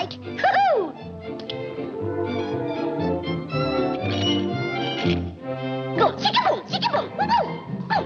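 Orchestral cartoon score introducing a Latin-style song. A quick falling swoop comes about half a second in, then held orchestral chords, then from about six seconds a run of bouncy swooping figures leading into the number.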